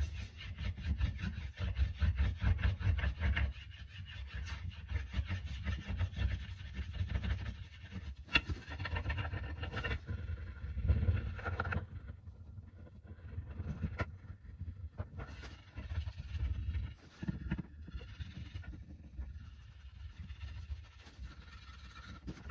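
Rubbing strokes along a beeswaxed wooden axe handle during burnishing, pressing the wax into the grain and knocking down rough spots. The handle knocks on the bench once at the start; steady rapid strokes run for about twelve seconds, then turn lighter and broken.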